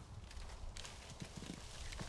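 Faint, irregular soft thuds of apples dropping onto grass as an apple tree is shaken to bring down the harvest.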